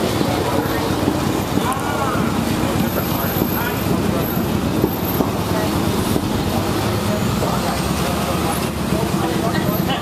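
Steady city street traffic noise with a low engine hum from a vehicle running nearby, and people talking faintly in the crowd.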